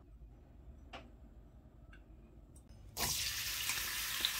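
Chopped onions start sizzling suddenly in hot oil in a nonstick wok about three seconds in, after a quiet stretch with a few faint clicks. The sizzle is a loud, even hiss.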